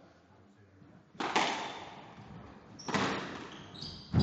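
Two hard squash shots, about a second in and near three seconds, each a sharp crack of racket and ball off the walls that rings on in the court, with a short high squeak of shoes on the wooden floor near the end.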